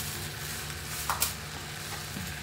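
Chicken and raw rice sizzling in a pot on the stove while more rice is poured in and a spatula stirs, with one short sharp scrape about a second in.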